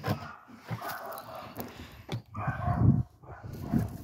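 A dog making several short calls in separate bursts.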